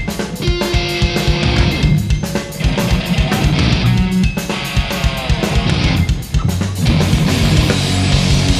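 A rock band playing live, with electric guitar over a fast, steady drum kit beat.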